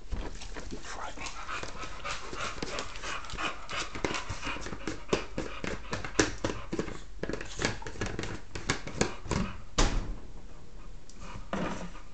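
Boxer dog panting: quick, breathy breaths, several a second. A single sharp click comes about ten seconds in.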